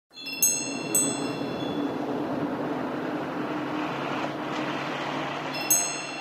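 Two bright chime strikes with long ringing overtones, then a steady rushing background with a low hum, and two more chime strikes near the end.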